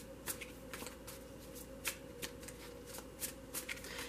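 A deck of tarot cards being shuffled by hand: a quiet, irregular run of soft card clicks.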